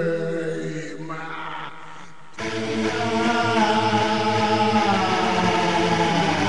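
Song music with long held vocal notes: a sustained note fades out over the first two seconds, then after a sudden cut about two and a half seconds in, new held notes start and carry on steadily.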